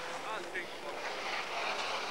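Rally car engine running in the distance under a steady hiss of wind on the microphone, the engine growing louder near the end as the car approaches through the snow.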